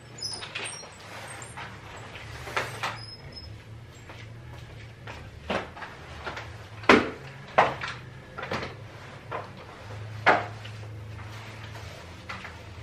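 Household clatter: a series of irregular knocks and bangs of things being handled and set down, loudest about seven seconds in and again about ten seconds in, over a low steady hum.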